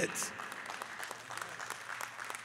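Faint applause from a church congregation: many small claps blending into a steady patter.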